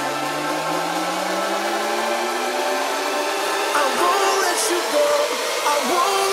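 Electronic dance music in a build-up, with the bass cut out. A synth tone glides upward over about three seconds under a steady wash of noise, and short melodic fragments come in over the last couple of seconds.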